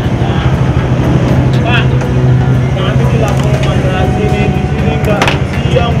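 Motorcycle engine idling close by, a steady low hum, with brief fragments of voices over it.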